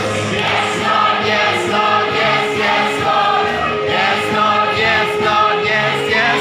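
A large congregation singing a worship song together, many voices in unison over instrumental accompaniment.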